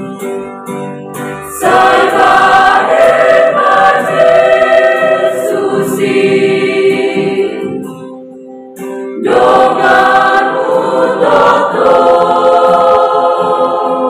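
Mixed youth choir of boys and girls singing a hymn together in chords. It starts softly, swells to full voice a couple of seconds in, drops briefly between phrases about eight seconds in, then comes back full.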